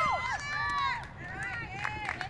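Several voices shouting and cheering at once, dying down about a second in, followed by a few scattered shorter calls.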